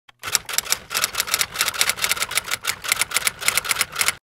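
Typewriter typing sound effect: a rapid, steady run of sharp keystroke clacks, about seven a second.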